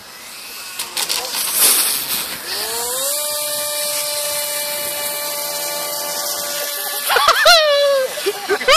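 Small electric RC plane's motor spinning up, its whine rising and then holding steady for several seconds as the plane takes off again after touching down. Near the end, loud swooping pitched sounds come in as the pitch changes rapidly.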